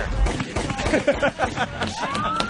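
Gunfire sound effect: a rapid string of sharp shots, mixed over voices and music.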